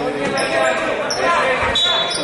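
Spectators' voices and shouts overlapping in a sports hall during basketball play. Near the end comes a short, high referee's whistle, stopping play for a foul call.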